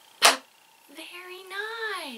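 A woman's voice gives a short, sharp "pop" about a quarter second in, the last of the rhyme's three pops. Near the end comes a drawn-out vocal sound that rises and then falls in pitch.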